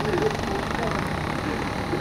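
A steady, continuous mechanical hum, with faint voices in the background.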